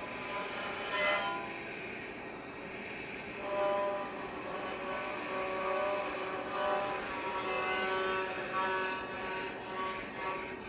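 Steady static hiss, like a detuned TV, with held tones coming in over it about three and a half seconds in and shifting pitch every second or so.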